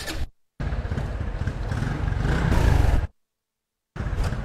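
Honda Wave Alpha 110cc single-cylinder four-stroke engine running with a steady low rumble that swells slightly, broken by two brief dead-silent gaps.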